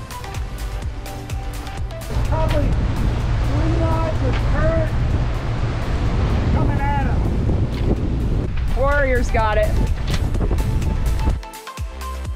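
Wind buffeting the microphone and choppy sea water rushing past a sailing catamaran's hull, loud and steady, with a few brief voice sounds over it. Background music plays at the start and returns near the end.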